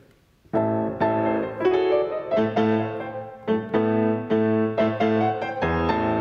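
Steinway concert grand piano playing a classical passage of repeated chords over a steady left-hand beat, starting about half a second in. It is played without the sustain pedal, the notes held by the fingers.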